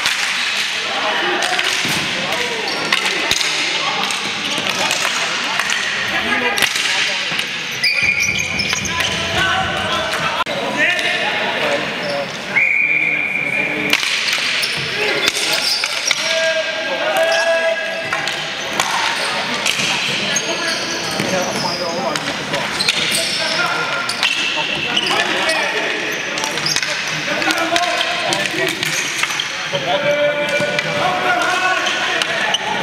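Ball hockey play on an indoor arena floor: sticks and the plastic ball clacking and knocking on the concrete over and over, with players and spectators shouting, echoing in the rink. A steady shrill referee's whistle blast about halfway through.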